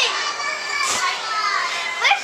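Young children playing, with high-pitched child voices calling and squealing over a steady background hiss.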